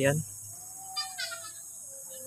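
A short, faint animal call about a second in, over an otherwise quiet background with a faint steady tone.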